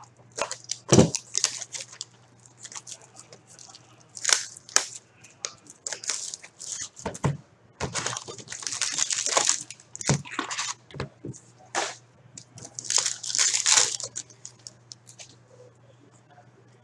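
Shrink wrap on a sealed card box being slit with a box cutter and torn off, crinkling, in short bursts of tearing with sharp clicks and scrapes of handling. A faint steady hum runs underneath.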